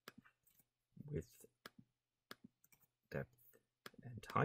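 Faint, sparse clicks of a computer mouse and keyboard as numbers are typed into form fields, with a couple of brief, quiet murmured sounds from a voice.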